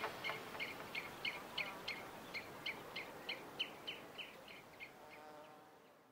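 Soundtrack music fading out: a steady run of short, high, chirp-like notes about three a second, growing fainter throughout.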